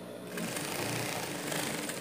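Industrial straight-stitch sewing machine running steadily through a short seam with a backstitch. It starts about a third of a second in and stops at the end.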